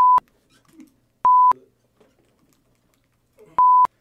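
Three short, steady, single-pitch censor bleeps, each about a quarter second long, the second about a second after the first and the third about two seconds later. Between them the sound track is nearly silent.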